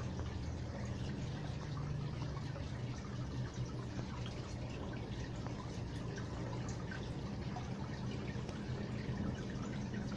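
Aquarium equipment running steadily: a constant low hum with faint trickling and dripping water.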